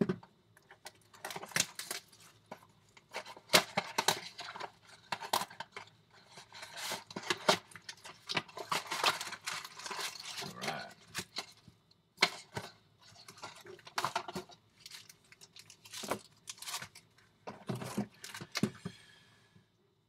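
Cardboard trading-card box being torn open and handled, with the wrapped card packs inside rustling and crinkling as they are pulled out: an irregular string of rips, clicks and crinkles.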